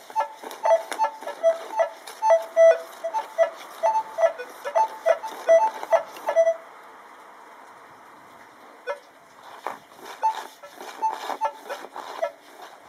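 Minelab E-Trac metal detector giving rapid short beeps at two pitches, a lower and a higher tone, for about six and a half seconds, signalling a kreuzer coin target pushed under the coil through the test box's hole marked 35. After a pause, fainter scattered beeps and a few knocks follow near the end.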